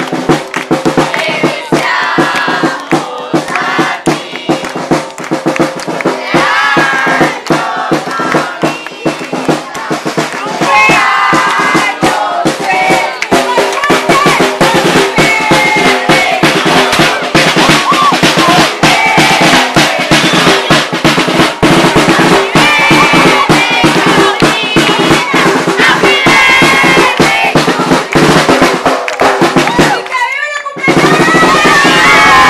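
Drums, snare and bass drum, playing a fast, continuous beat while a crowd of guests sings and shouts along.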